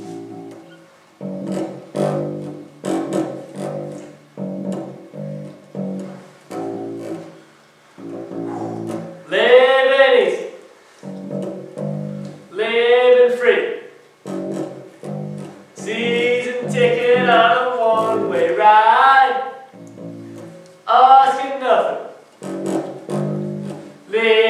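Electric bass guitar played through a small amplifier: a repeated plucked riff of short low notes. From about ten seconds in, a man sings over it in several short phrases.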